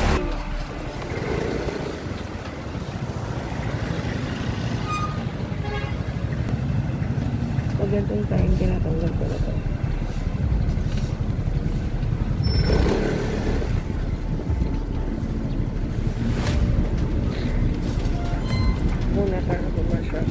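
Motorcycle ride: steady low engine and wind rumble, with a few short bursts of muffled voice over it.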